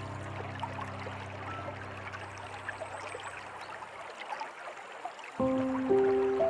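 Soft, slow piano music over a steady trickling stream. The piano notes die away about four seconds in, leaving only the water trickling, and a new low chord comes in near the end.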